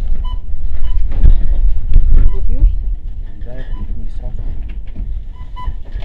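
Short electronic checkout beeps, two near the start and two more near the end, over a heavy low rumble of camera handling noise, with voices in the background.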